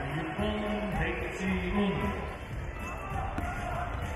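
A basketball being dribbled on a hardwood court, a few sharp bounces, with voices calling out across the hall and background music.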